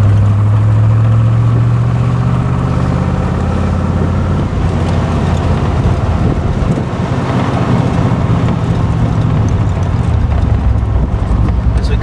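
Side-piped 327 cubic-inch V8 of a 1966 Corvette L79 running under way, heard from the car on the move. The engine note holds steady for the first few seconds, then drops lower.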